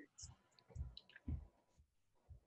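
Near silence on a video-call audio line, with a few faint low thumps about every half second and small faint clicks.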